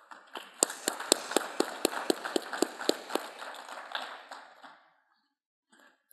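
Audience applauding, with one person's claps standing out at about four a second. The applause dies away about five seconds in.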